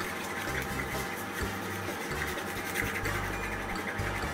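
Soft background music with a low bass line, over faint scraping of a thin stick stirring paint in a small cup.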